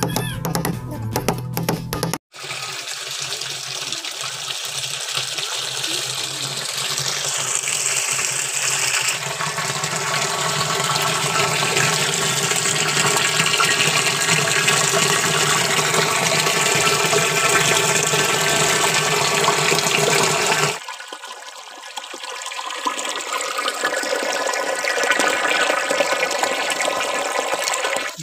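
Water from a hose pouring into a plastic water tank as it fills, a steady rushing splash. About three-quarters of the way through it drops in level and turns thinner, then builds again.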